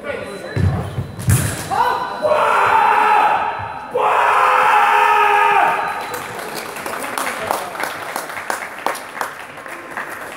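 Heavy thuds of feet landing on the fencing piste and a sharp knock in the first second and a half of a sabre exchange. Then come two long, loud shouts, each held for more than a second, the yells that follow a touch. Light clicks and footsteps follow.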